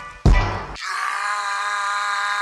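Intro music: a sharp hit about a quarter second in, then a long held chord from about a second in.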